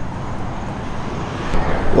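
Steady low rumble of outdoor background noise on a roadside, with one faint click about one and a half seconds in.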